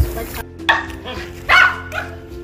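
A small dog barking twice, two short barks about a second apart, the second louder, over background music.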